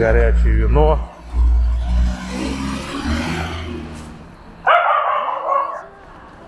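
Small dog barking and yapping: a quick run of rising yaps in the first second, then a louder bark about five seconds in, an angry-sounding dog.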